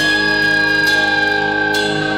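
Live rock band playing, with the electric guitar holding one long high note that sags slightly in pitch near the end, over steady bass and drums.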